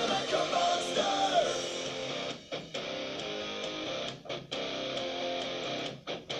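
Hard rock music: strummed electric guitar, with singing in the first second or so and a few brief drop-outs in the sound.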